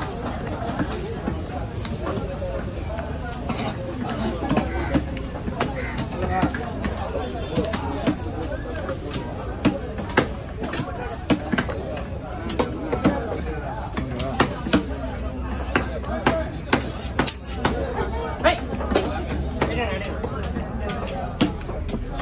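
Heavy knife chopping mahi mahi into steaks on a wooden log block: sharp chops and knocks at uneven intervals, with voices talking throughout.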